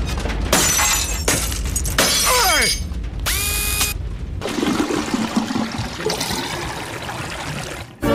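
Cartoon sound effects of a spaceship's hull cracking and crunching under deep-sea pressure. There are several sharp cracking bursts in the first four seconds, then a quieter, steadier stretch.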